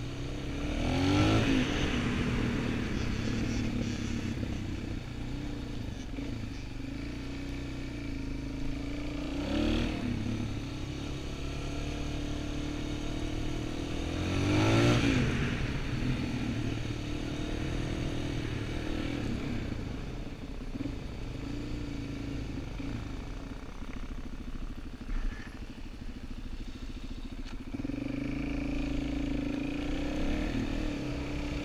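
Suzuki DR-Z400SM's single-cylinder four-stroke engine running under changing throttle through tight corners, revs rising and falling. It revs up sharply three times, about one, ten and fifteen seconds in.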